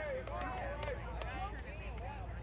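Several voices of spectators and players talking and calling out at once, too distant or overlapping to make out words, over a steady low rumble.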